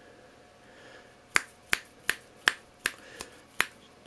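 Fingers snapping about seven times, evenly, a little under three snaps a second, starting just over a second in, to test the microphone of a sound-activated flash and camera trigger.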